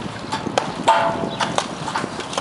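Hammer striking brick and mortar on top of a brick wall: sharp, irregular knocks and clinks a few times a second as bricks are broken loose, with a louder, briefly ringing knock about a second in.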